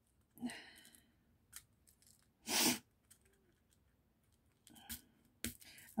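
Small clear plastic diamond-painting drill pot and drill bags being handled: a few scattered light clicks and rustles, with one brief louder rustle about two and a half seconds in and a sharp click near the end.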